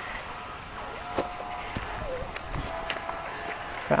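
Light handling sounds of a mesh fishing keepnet being lifted out of the river: soft rustles and scattered small clicks and knocks.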